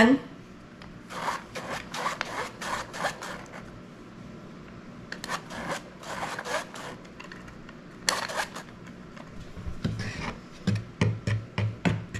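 A hand-crank flour sifter being cranked over a wooden bowl, its wires working bread flour through the mesh in several spells of rapid strokes. Near the end, flour is stirred in the wooden bowl with a wooden-handled utensil, giving a run of soft knocks a few times a second.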